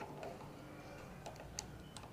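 A few faint clicks and ticks from hands screwing a Ulanzi GoPro cage onto a quarter-inch-20 tripod screw; the sharpest click comes about one and a half seconds in.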